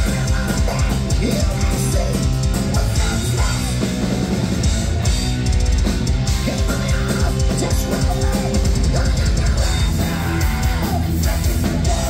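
Heavy metal band playing live at full volume: distorted electric guitars, bass and a pounding drum kit, in a steady wall of sound. It is heard from within the audience.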